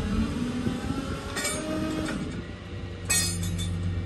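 A flatbed tow truck's engine runs steadily, powering the winch that drags the car toward the bed, with two short high metallic squeals from the winch cable and hooks.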